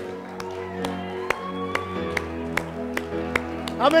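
Soft worship-band keyboard music holding sustained chords, with sharp clicks in an even beat, a little over two a second.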